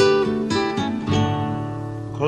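Acoustic guitar playing an instrumental passage in a gentle country song, with chords struck about every half second and left to ring and fade.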